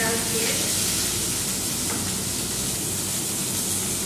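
Food sizzling steadily in hot oil in a stainless saucepan while it is stirred with a wooden spatula, a continuous high hiss over a low steady hum.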